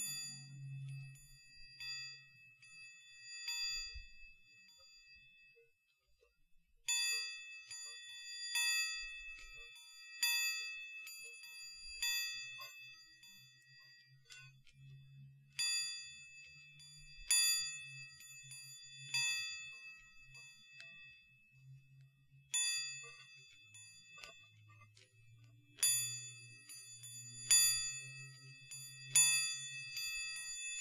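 Chinese Baoding balls with chimes inside, handled close to the microphone, each movement setting off a high, bell-like ring. The ringing comes in separate strikes, sparse at first, stopping for a few seconds, then returning every second or two and coming more often near the end.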